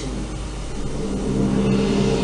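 A steady low drone of one held pitch with even overtones, swelling about a second in: the soundtrack of a narrated promotional film between two narration lines.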